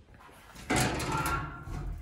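Hinged lid of a chicken nest box being opened to check for eggs: a sudden clatter about two-thirds of a second in that dies away over about a second.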